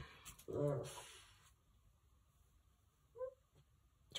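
A dog whining to be let out: a short low whine about half a second in and a brief higher whine near the end, with a short rustle in between.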